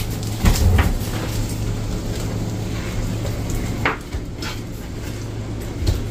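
A metal serving utensil scraping and clinking against a ceramic plate and a skillet as spaghetti is served, a few light clicks over a steady low hum.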